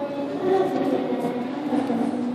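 A girl's voice through a handheld microphone, with the chatter of a crowded room around it.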